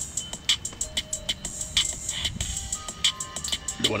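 Background music with a steady beat of short, evenly spaced percussive ticks and a few held notes.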